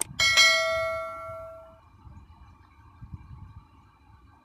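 A single bell 'ding' sound effect, the notification-bell chime of an on-screen subscribe-button animation. It comes just after a mouse-click sound and rings out, fading over about a second and a half.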